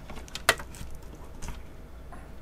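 Handling noise at a desk: one sharp click about half a second in and a fainter one about a second later, over a low steady room hum.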